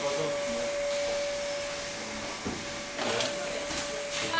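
A steady whirring motor with an even hiss and a constant hum, which breaks off briefly about halfway through and then runs on.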